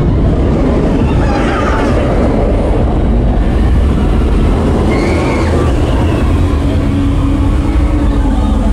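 Nemesis Reborn, an inverted steel roller coaster, with its train rumbling along the track overhead. From about three seconds in, a hiss of steam blasting from a ride effect joins the rumble.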